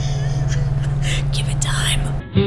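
A woman whispering, over a steady low hum.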